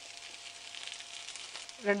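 Sliced onions and garlic sizzling in a nonstick frying pan, with a crackling hiss that grows louder as a freshly poured capful of oil heats up.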